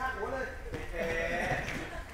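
People's voices during sparring: short vocal sounds at first, then a longer drawn-out call about halfway through.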